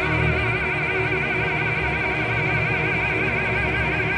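An operatic singer holds one long high note with a wide, even vibrato, reached by an upward slide just before, over a chamber orchestra's sustained accompaniment.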